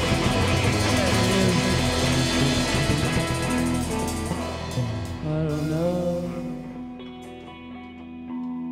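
Live psychedelic rock band playing: electric guitars and drums at full volume for the first few seconds, then the playing drops away to a few held guitar and keyboard notes that fade.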